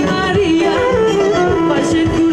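Live band dance music played loud through a PA: a voice sings a sliding, ornamented melody over a steady drum beat.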